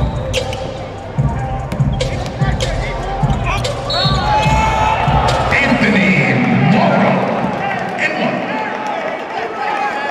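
A basketball is dribbled on a hardwood court, bouncing a little over twice a second, with sneakers squeaking, until about four seconds in. Then a crowd in the arena shouts and cheers loudly for a couple of seconds before dying down.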